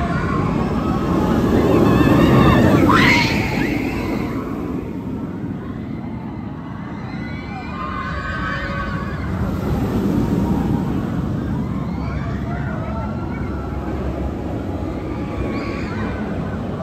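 B&M flying coaster train rumbling along the steel track overhead, swelling loudest about two to three seconds in and again around ten seconds in, among the voices of the people around.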